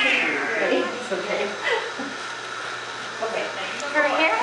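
Newborn baby crying in wails, loud at first, weaker in the middle and rising again near the end.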